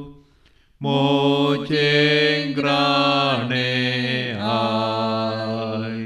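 A man's voice chanting a slow devotional chant in long held notes, the pitch stepping down twice in the second half.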